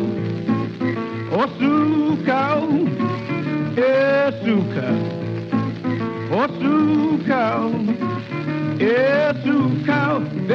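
A 1930s country blues record playing, with no sung words here: steady guitar-backed accompaniment under swooping, gliding melody lines.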